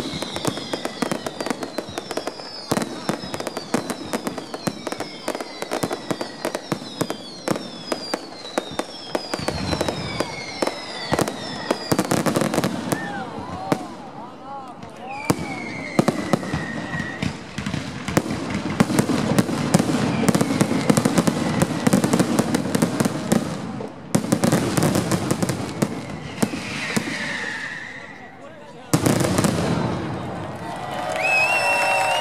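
Fireworks display: rapid volleys of bangs and dense crackling, with repeated falling whistles and stretches of thick, continuous rumbling barrage.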